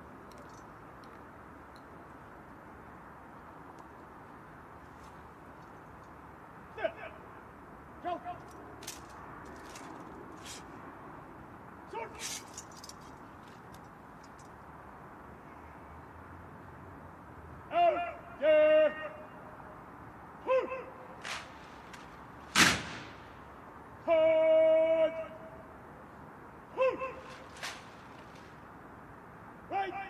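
Drawn-out shouted military drill commands carrying across an open parade ground, several short calls and one held for about a second, with a single loud sharp crack between them. Scattered faint clicks come earlier, before the commands begin.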